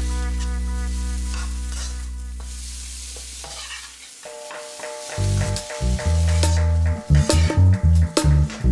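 Diced carrots, peas and onion sizzling in a pan while a metal spatula stirs and scrapes them, with scattered scraping strokes. Background music runs under it: a held chord fades out over the first four seconds, and a bass-heavy beat comes back in about five seconds in.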